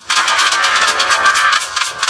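Distorted, effects-processed ident audio: a dense, rapidly pulsing buzz with little bass, cutting in after a brief gap, with fuller music coming in at the very end.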